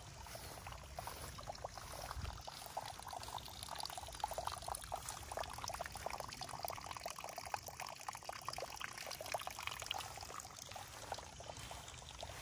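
A thin stream of water falling from a rockery into an ornamental pond, a continuous trickling splash that is loudest through the middle.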